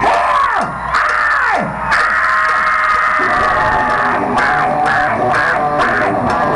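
Live rock band playing loud through a PA: electric guitar pitch dives, then a long held high note, with the full band and drums coming in about three seconds in.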